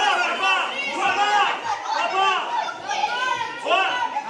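Children's high-pitched voices shouting in a series of short calls, ringing in a large gym hall.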